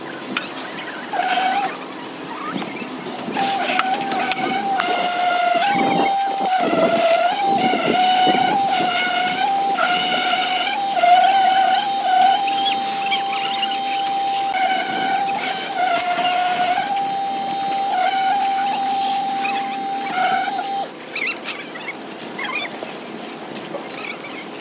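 Electric concrete vibrator running with a steady high whine that wavers and dips in pitch now and then as the poker works the wet concrete. The whine cuts off near the end.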